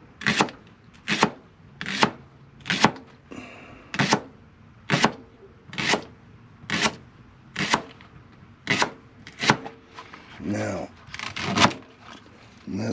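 Chef's knife slicing a leek into thin rounds on a plastic cutting board: a sharp chop against the board roughly once a second, steady and even.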